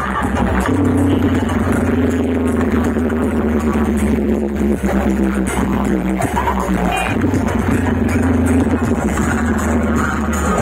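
Loud electronic dance music with heavy, steady bass, played through truck-mounted DJ box speaker setups with horn loudspeakers.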